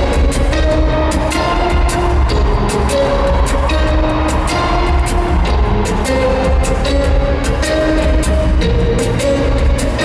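Live acoustic guitar music built up on a loop pedal, played loud through a stadium PA: a repeating melodic guitar figure over a steady percussive beat and deep bass, with no singing.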